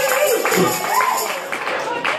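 End of a live acoustic song: a woman's long held sung note over acoustic guitar ends just after the start, and a shorter sung phrase follows as the music dies away.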